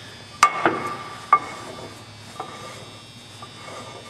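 Metallic knocks on the die head of an Oster Model 784 pipe and bolt threader as a hand handles it: two sharp knocks about a second apart, each ringing on with a clear tone, then two fainter taps.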